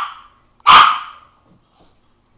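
A papillon barking once, sharp and loud, about two-thirds of a second in, with the tail of an earlier bark fading at the start: excited alarm barking during a barking fit.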